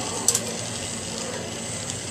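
Lampworking bench torch flame hissing steadily, with one short click about a third of a second in.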